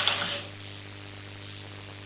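Steady low hum with faint hiss, the recording's background noise left after the broadcast speech ends; a fading tail of sound dies away in the first half-second.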